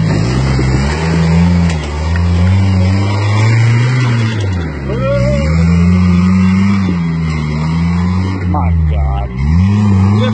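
Toyota pickup's engine revving up and down over and over as the truck works up a steep rocky off-road climb, each rev swelling and dropping back every second or two.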